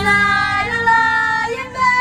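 Two young girls singing together into handheld karaoke microphones, holding long notes, with the pitch sliding down at the end of a phrase.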